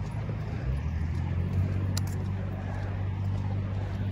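Steady low rumble of motor-vehicle traffic, with a single sharp click about two seconds in.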